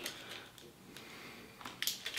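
Faint chewing of a Reese's Outrageous candy bar, with a few short crackles near the end as the bar's plastic wrapper is handled.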